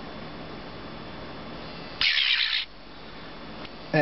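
Mobile phone ringing with an incoming call: a short, loud burst of high-pitched ringtone about two seconds in, and the next burst starting at the very end, after a steady low hiss.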